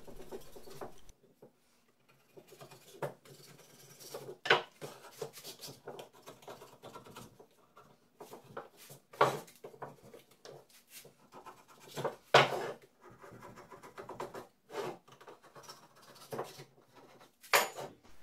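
A scraper scratching leftover bits of a glued paper template off bandsawn wooden cutouts: irregular short scrapes, with a few sharper knocks of the wood pieces against the workbench.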